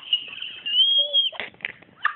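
A person's high-pitched squeal, one thin held note that rises slightly and breaks off after about a second, followed by a couple of soft knocks.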